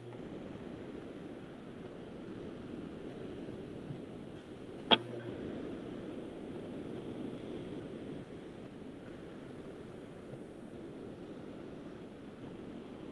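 Faint steady background hiss from an open microphone on a video call, with two short clicks, one at the start and one about five seconds in.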